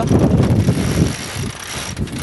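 A roller-furling jib being unrolled: the furler and its lines running out, with wind rumbling on the microphone. The sound eases off after about a second.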